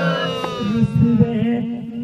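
A man's singing voice holds a long note into a microphone and trails off about half a second in. Under it runs a musical accompaniment: a steady low tone that pulses in a quick rhythm.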